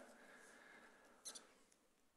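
Near silence in a pause between words: the reverberation of the last spoken words fading in a large church, then one brief, faint, high click a little over a second in.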